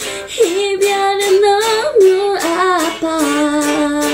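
A woman singing a Korean ballad, holding long notes with vibrato and sliding between them, over a strummed guitar. The strumming comes back in more strongly near the end.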